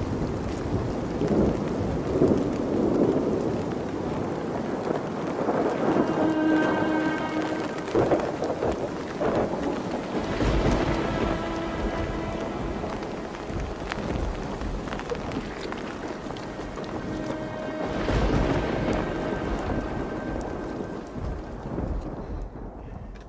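Steady rain with rolls of thunder, the heaviest rumbles swelling about ten seconds in and again around eighteen seconds.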